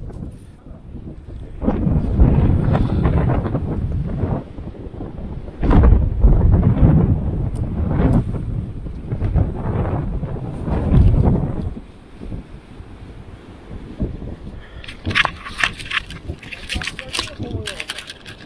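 Strong wind buffeting the microphone in loud, rough gusts, mixed with surf breaking on rocks; it eases about two-thirds of the way through. Near the end come a run of sharp clicks and rattles.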